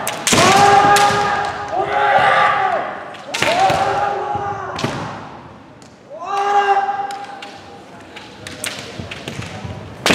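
Kendo fighters' kiai: four long, held shouts. Between them come sharp knocks of bamboo shinai striking and feet stamping on the wooden floor, with lighter clacks of the shinai near the end.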